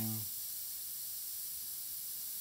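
Airbrush spraying paint with a steady high hiss of air.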